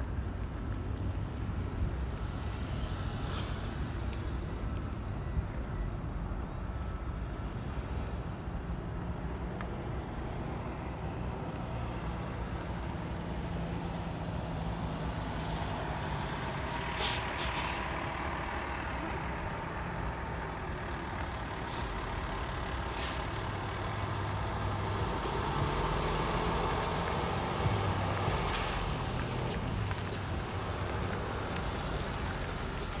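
Trucks driving around a construction site: a steady engine rumble that grows louder near the end as a pickup truck passes close, with a few short, sharp hisses in the middle.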